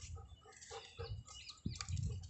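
Birds chirping a few times in the middle, over a steady soft pulse of about four a second and irregular low thumps.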